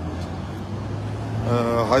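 Low steady rumble of road traffic in a pause between a man's words; his voice comes back about one and a half seconds in.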